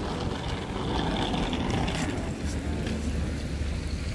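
A car driving past on a wet road: steady tyre and engine noise, with a low rumble that grows stronger in the second half.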